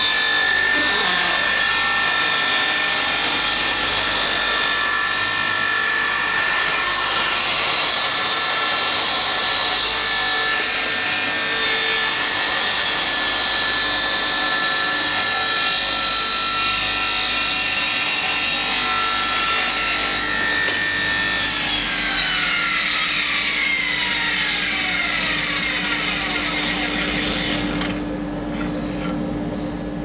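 Table saw ripping a thin strip of ash, the blade running steadily with a high whine as the wood is fed through. About 21 seconds in, the saw is switched off and its whine falls away as the blade spins down over several seconds.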